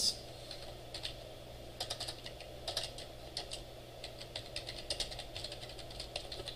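Typing on a computer keyboard: faint, irregular key clicks, a few about one second in and then a steadier run of keystrokes from about two seconds on, over a low steady hum.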